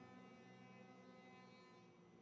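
Near silence: a faint, steady hum with no engine or tyre sound.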